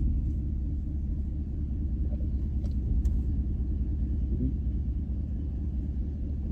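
Steady low rumble of a car heard from inside the cabin, with a couple of faint clicks about halfway through.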